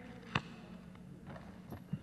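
Quiet room tone with one sharp tap about a third of a second in, from documents and a folder being handled at a table microphone, and a smaller click near the end.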